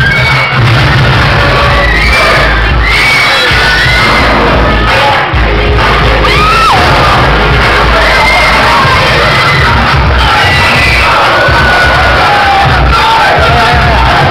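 A crowd cheering and shouting over loud dance music, with a heavy low end.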